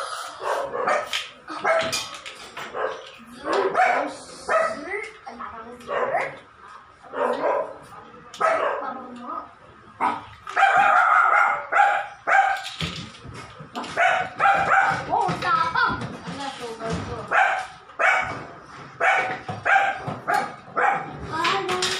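A dog barking and yelping in short bursts, on and off throughout, with a longer unbroken stretch of sound in the middle.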